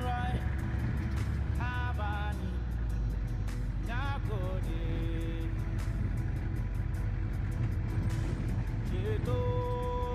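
Steady low rumble of a minibus's engine and tyres heard from inside the cabin, with music and a singing voice over it; short sung phrases come in about two seconds in, around four seconds, and again near the end.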